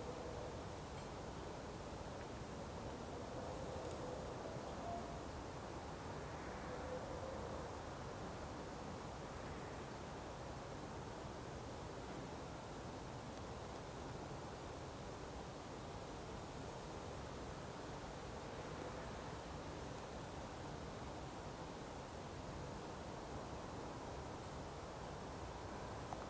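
Faint, steady background hiss with no distinct event, and a few faint wavering tones in the first seconds.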